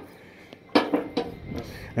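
A short sharp knock about three-quarters of a second in, then a few fainter clicks: footsteps and light knocks on the perforated metal deck of a car-hauler trailer.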